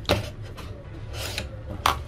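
Hands handling a mobile phone close to the microphone: rubbing with three short clicks, over a low steady hum.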